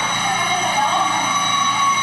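Electric school bell ringing with a steady, continuous tone, set off by touching two bare wires together by hand because the bell has no working switch and its wiring is in poor repair.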